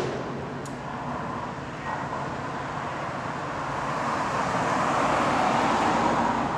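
A car driving past on the street, its road noise swelling over a few seconds to a peak near the end, over a steady low hum of traffic.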